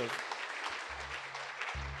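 A congregation applauding with many hands clapping together. Low, steady bass notes from the church band come in about a second in.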